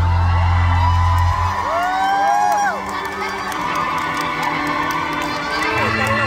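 A concert crowd of fans cheering and screaming at the end of a song, with high shrieks rising and falling in pitch. The music's low final note cuts off about a second and a half in.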